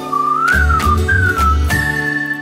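A whistled tune that glides up and down over cartoon background music with a bass beat, ending on a held higher note.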